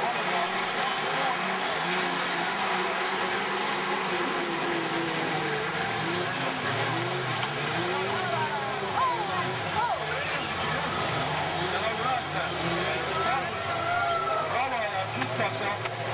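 A pack of caged autocross race trucks accelerating away together just after the start and driving through mud, many engines revving at once so that their pitches rise and fall over one another.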